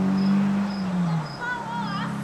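Insects chirping in an even rhythm, about two short high chirps a second, over a low steady drone that is loudest in the first second. Near the end comes a brief, wavering, high-pitched cry.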